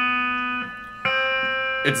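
Electric guitar chord ringing, then strummed again about a second in and left to ring: an open A minor chord.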